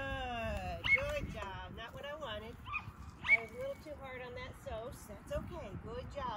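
A dog yipping and whining excitedly in a quick series of high calls that bend in pitch, with one sharper, louder yelp about three seconds in.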